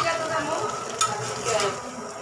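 Leafy greens sizzling in a metal karahi while a metal spatula stirs them, with two sharp knocks against the pan, one right at the start and one about a second in.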